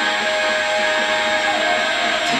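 Background music playing in the room, with a long held note.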